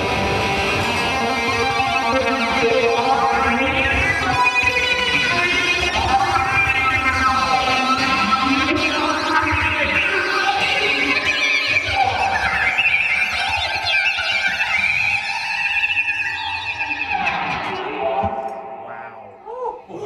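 Distorted electric guitar, a Fender Stratocaster played through effects pedals, making an eerie noise out of fast trills, diminished chords and two-handed tapping, with pitches sweeping up and down. It fades out near the end.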